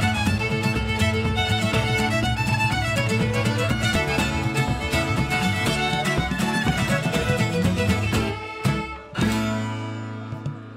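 Fiddle tune played on fiddles with guitar accompaniment. The playing drops out about eight seconds in, then one final chord sounds and rings out near the end.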